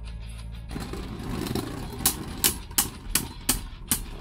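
Two Beyblade spinning tops whirring as they run over a plastic stadium floor. From about halfway in they clash repeatedly, six sharp clacks roughly a third of a second apart.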